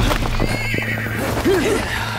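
A horse whinnying in short rising-and-falling calls, the clearest about one and a half seconds in, among clattering knocks, with music underneath.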